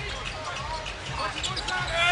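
Basketball game court sound with the arena crowd murmuring, a few ball bounces and short squeaks on the court.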